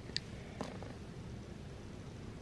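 Domestic cat purring steadily while being groomed with a slicker brush. Two short sharp clicks come within the first second.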